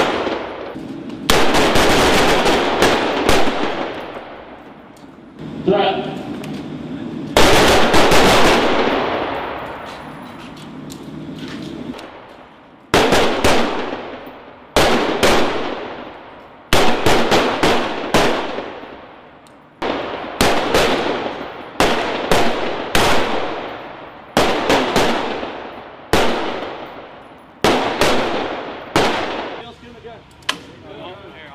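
Carbines fired by a line of shooters on an indoor range: rapid, overlapping shots that ring on in the hall's echo. Long strings of fire come early, then from about halfway on, short groups of shots follow every two seconds or so.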